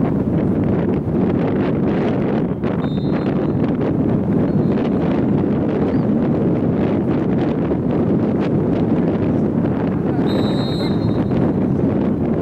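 Wind buffeting the camera microphone: a steady, loud rumbling hiss, with a short high tone about ten seconds in.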